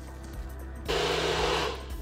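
Single-serve bullet-style blender pulsed once for under a second, its motor whirring as it chops ice and frozen banana for a protein shake, over faint background music.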